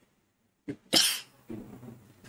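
A person's single short cough about a second in, preceded by a faint click and followed by faint low voice sounds.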